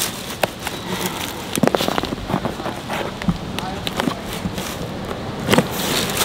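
Scissors cutting through packing tape on a cardboard shipping box, then the flaps being pulled open: an irregular run of sharp clicks, crackles and cardboard rustles.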